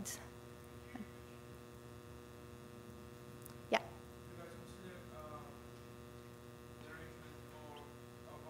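Steady electrical mains hum, with faint, distant speech of an audience member asking a question off-microphone, and one sharp click a little before four seconds in.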